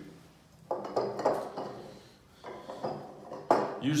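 Several sharp metallic clinks and knocks as the beam's powder-coated metal tube and its metal end coupling are handled and shifted on a wooden tabletop.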